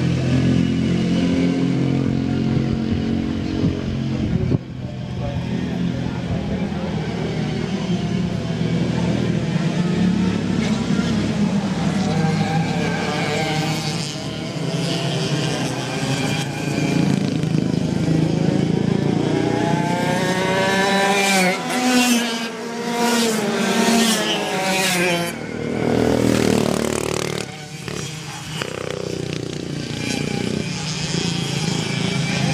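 A pack of two-stroke racing kart engines running, first in a steady low drone, then revving with many rising and falling whines as the karts accelerate and pass, loudest about two-thirds of the way in.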